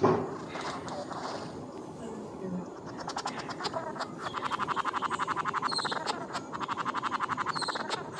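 Male flame bowerbird's courtship display call: a rapid train of dry clicks, in two runs, one starting about three seconds in and a shorter one near the end.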